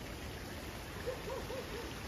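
Steady rush of a nearby mountain stream. A few faint, short rising-and-falling tones come in about a second in.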